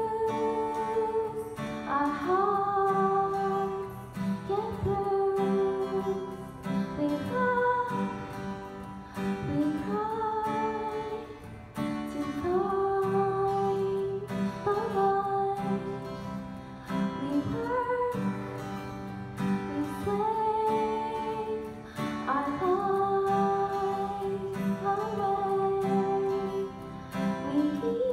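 A woman singing with a strummed acoustic guitar accompanying her, her sung lines coming in phrases every two to three seconds.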